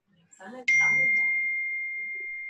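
A single clear bell-like ding about two-thirds of a second in: one high pure tone that rings on and slowly fades.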